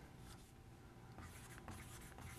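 Faint strokes of a dry-erase marker writing on a whiteboard, a few short scratchy squeaks as letters are drawn.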